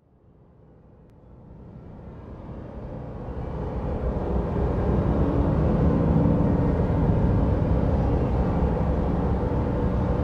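A low, steady rumbling ambience fading in from silence over the first few seconds, then holding level.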